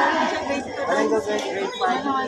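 Chatter of a crowd: many voices talking over one another, with no single speaker standing out.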